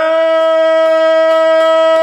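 A man singing one long, held note in Albanian folk style, loud and steady in pitch.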